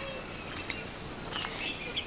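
Faint outdoor ambience with insects chirping, and a few faint short chirps a little past the middle.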